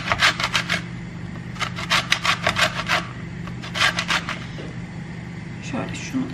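An orange's peel being grated on a metal box grater: quick rasping strokes, about eight a second, in three runs, the last one short.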